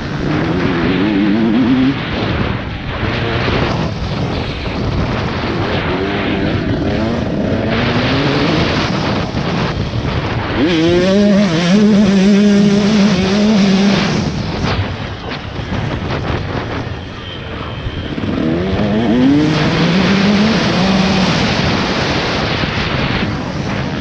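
KTM 150 SX two-stroke motocross engine ridden hard, revving up through the gears in repeated rising climbs and holding high revs on the straights. The revs drop for a corner about two-thirds of the way through, then climb again.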